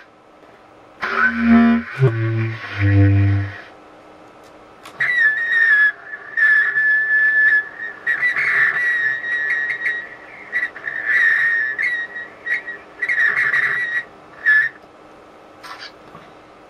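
A few low reed-woodwind notes, then a long high whistled tune with a thin, pure tone, held in phrases with short breaks.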